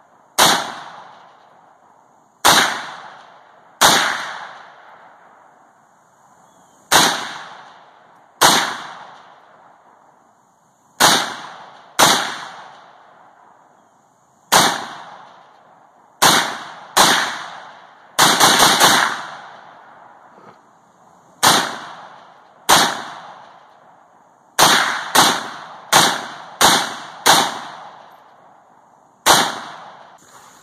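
AK-pattern rifle firing single aimed shots one to three seconds apart, each shot followed by a short echo. A bit past halfway comes a quick string of about five shots, and near the end the shots come faster, about two a second.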